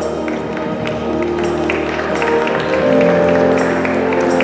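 Ballroom dance music for a Standard dance heat: sustained melodic notes over a steady beat.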